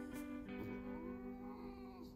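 Background music with long held notes, and over it a cat's drawn-out meow that rises and falls, starting about half a second in.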